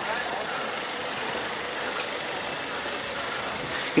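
Street ambience: a steady hum of road traffic and vehicle engines, with faint voices of passers-by.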